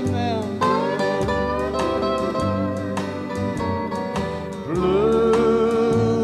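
A dobro, a resonator guitar played flat with a steel bar, plays a sliding country-ballad melody. Its notes glide up into pitch, near the start and again about five seconds in, over a steady strummed rhythm-guitar accompaniment.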